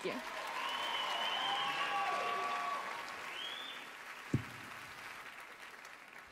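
Theatre audience applauding with a few cheering voices, dying away over the last couple of seconds, with a single sharp thump about four seconds in.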